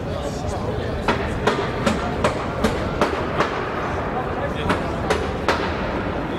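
A run of sharp smacks at an even pace, about two and a half a second, over noisy room sound with voices. The smacks break off for about a second after the third second and then resume for three more.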